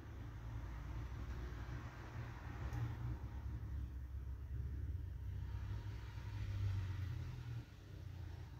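A low, steady rumble that swells and fades and drops away shortly before the end. Over it lies a faint scraping of a palette knife working through thick wet acrylic paint.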